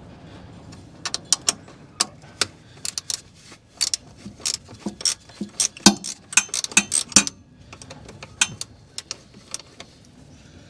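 Metal spanner working a battery terminal clamp bolt loose: a run of irregular sharp clicks and clinks of steel on the bolt and clamp, thinning out to a few scattered clicks near the end.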